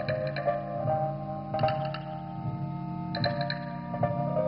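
Background music: a plucked, guitar-like melody over sustained low notes, with a short cluster of high ticks about every one and a half seconds.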